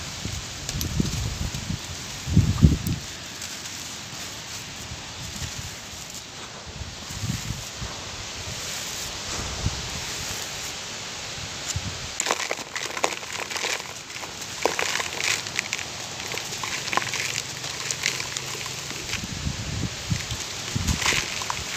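Bare hands crushing and crumbling dry, gritty charcoal-ash lumps, grit and powder trickling down with a crackly crunching that turns denser from about halfway. Wind rumbles on the microphone in the first few seconds.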